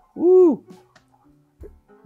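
A man's short, hooting vocal exclamation, a single 'hooo' whose pitch rises and falls, lasting about half a second. It is followed by faint background music with held notes.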